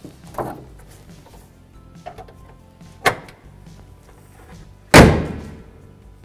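The hood of a 2003–2007 Honda Accord slammed shut: one loud thud that rings away over about a second, about five seconds in. A sharp click comes about two seconds before it.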